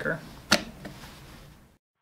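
A sharp plastic click as the front cover of a molded case circuit breaker is pressed into place, followed by a fainter second click.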